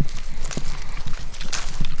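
Footsteps on a paved road: irregular taps and scuffs over a steady low rumble.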